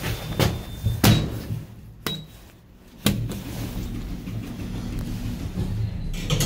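Passenger lift starting to travel up: a few sharp clicks and knocks in the first three seconds, then a steady low hum of the moving car.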